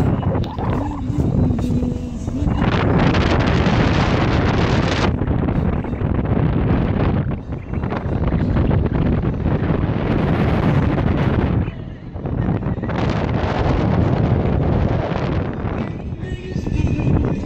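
Wind rushing past the microphone at an open car window, over the road noise of the moving car. It surges louder and hissier about two and a half seconds in and again about thirteen seconds in.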